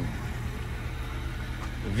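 Steady low engine hum in the background, as of a vehicle idling nearby.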